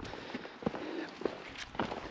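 Footsteps of a walker on a stony hill path: a few separate sharp crunches and taps over a faint background hiss.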